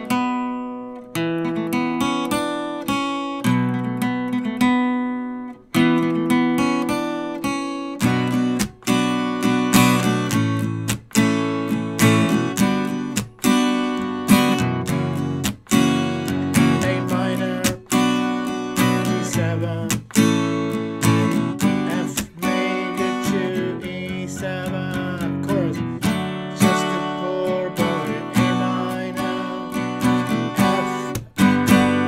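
Steel-string acoustic guitar with a capo, strummed through a chord progression in a steady rhythm, each chord struck with a sharp attack and left ringing.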